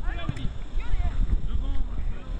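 Scattered voices calling out at a distance, over a steady low rumble of wind on the microphone.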